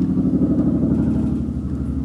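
Helicopter flying overhead: a steady low rumble with the rapid, even beating of its rotor blades.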